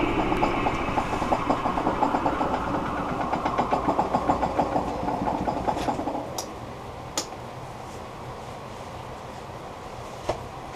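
Wood lathe with an out-of-balance holly bowl blank winding down after being switched off: the motor's whine and the blank's rhythmic beat fall in pitch and fade out about six seconds in, leaving a low steady hum. A few sharp clicks follow.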